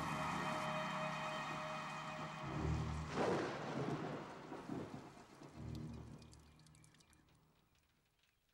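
Rain falling, with rolls of thunder rumbling a couple of times, under a held steady tone in the first couple of seconds. The storm fades away over the last few seconds.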